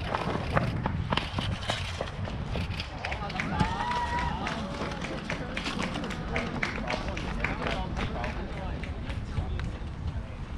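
Voices of players and onlookers calling out across an outdoor ball field, loudest about four seconds in. A steady low rumble of wind on the microphone and scattered short clicks run beneath.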